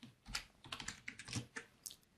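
Typing on a computer keyboard: a faint, quick, irregular run of keystrokes.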